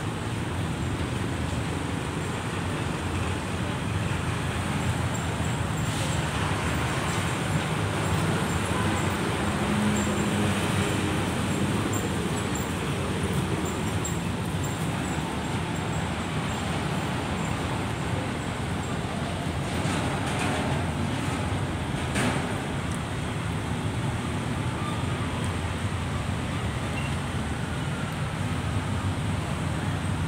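Steady background road traffic noise with a low rumble, and a few faint clicks.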